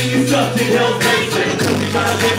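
Live hip-hop band playing loudly: a bass line of held notes that shifts pitch about a second in and again near the end, over a steady drum beat.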